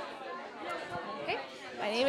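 Background chatter: several people talking at once in a large hall, faint behind the microphone.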